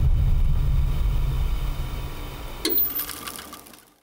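A low steady drone of the show's title-card transition sound, with a brief whoosh about three quarters of the way through. It fades out to nothing near the end.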